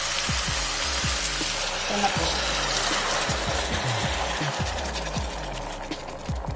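Eggplant strips and onion sizzling in hot oil in a pot: a steady frying hiss that eases off near the end. Background music with a steady beat plays underneath.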